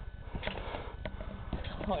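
A person bouncing on a trampoline: a few short thumps and clicks from the mat and springs about every half second, over a steady low rumble.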